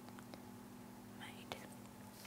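Faint scratching and light ticks of a pen writing on paper, then a single sharp click about one and a half seconds in, over a steady low hum.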